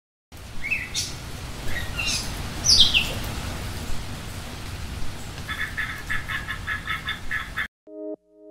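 Birds calling by open water: a few sharp chirps that sweep in pitch during the first three seconds, then a rapid chattering call repeated about five times a second, over a steady low rumble. The sound cuts off just before the end.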